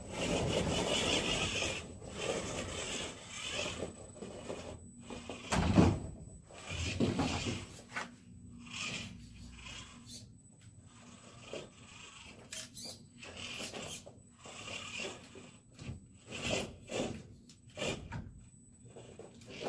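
Small RC rock crawler's electric drivetrain whirring in stop-start bursts as it climbs over logs, with its tires and chassis scraping and knocking on wood. A louder knock comes about six seconds in.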